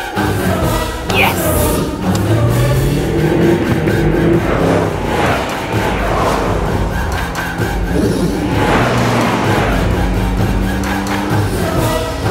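Dramatic action-film score with choir-like voices. Mixed in under it is the rush of cars speeding past on a dirt road, swelling a few times: a short high whoosh about a second in, and longer rushes about five and nine seconds in.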